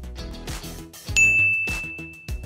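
Background music with a steady beat, and about a second in a single bright bell-like ding that rings out and fades, marking the points scored.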